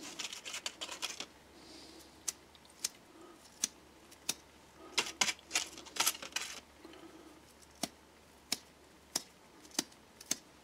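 Old toothbrush bristles being flicked to spatter black paint flecks: a string of sharp, irregular ticks, with a few brief scratchy rasps about halfway through.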